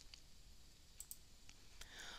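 Near silence, broken by a few faint, brief clicks about a second in and near the end.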